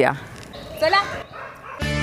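A dog gives a single short bark or yelp about a second in. Background music starts just before the end.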